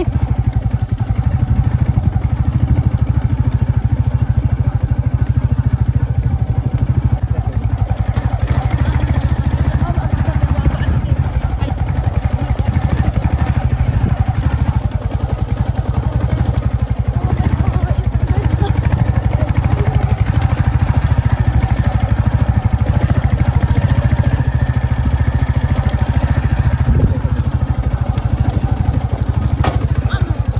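Motorcycle engine running steadily under way, a continuous low, fast-pulsing note heard from the rider's seat.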